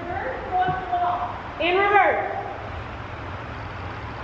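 Speech only: a voice says two short bits the recogniser did not catch, followed by quieter steady background noise.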